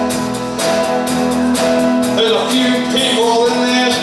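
Live country band music: an electric guitar played lap-steel style with a slide bar, its notes gliding in pitch, over strummed acoustic guitar and a steady beat.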